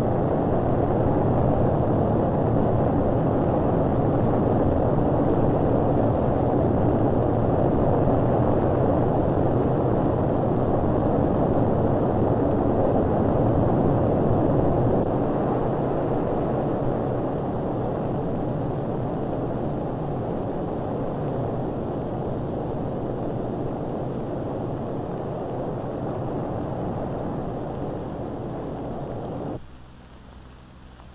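The Saturn V first stage's five F-1 rocket engines in climbing flight: a loud, steady, noisy rumble, heaviest in the low and middle range. It fades gradually through the second half and cuts off suddenly near the end.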